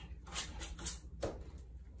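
A few faint knocks and taps as a small dog pushes a wooden interior door shut.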